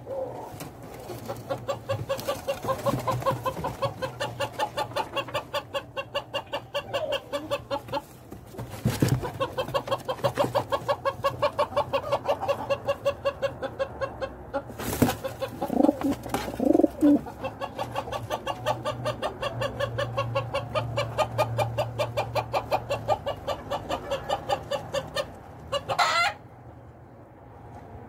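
Birds calling in a fast, steady run of short repeated notes, about four or five a second, with a few louder calls around the middle; the sound stops abruptly near the end.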